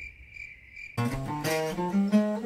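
For about a second the guitars stop and an insect's steady high-pitched call is heard alone; then two acoustic guitars come back in, playing a picked melody over chords.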